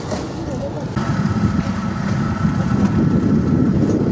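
Crowd of many people talking at once, a dense chatter that gets louder about a second in.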